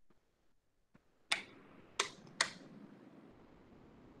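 Three sharp clicks, like those of a computer mouse or keyboard: one, then two close together about half a second later. With the first click a faint steady hiss of an open microphone begins.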